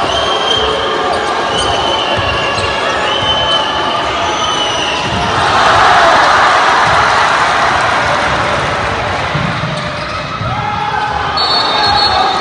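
A basketball being dribbled on a wooden court, with sneakers squeaking over the first few seconds. A hall crowd's voices swell loudly about halfway through as play runs toward the basket.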